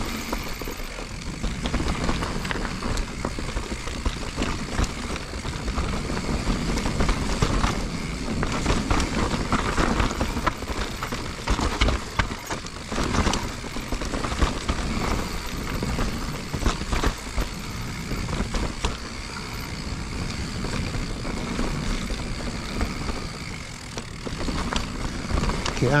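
2021 Giant Reign Advanced Pro 29 full-suspension mountain bike rolling down a dirt, rock and root trail: tyres crunching over the ground, with many small knocks and rattles from the bike as it hits rocks and roots, heard close up from a chest-mounted camera.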